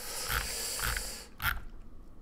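A person's breathy exhale close to the microphone, lasting about a second and a half, followed by a short click.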